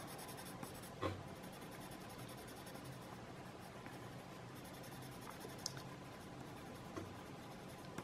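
Yellow-orange colored pencil shading on sketch paper: a faint, steady scratchy rubbing, with a light tap about a second in.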